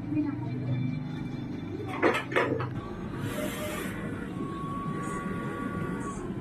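Sublimation printer running a nozzle check, with a steady low mechanical hum as the print head works. Two or three short sharp sounds come about two seconds in, a brief hiss follows about a second later, and a faint steady high tone runs through the last two seconds.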